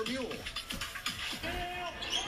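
Faint basketball game broadcast audio: a commentator's voice, then a couple of held musical notes.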